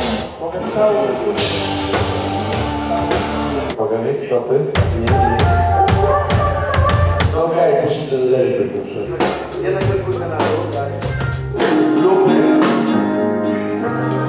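A live pop band playing at a soundcheck: a male singer sings into a handheld microphone over drums, low sustained bass notes and guitar.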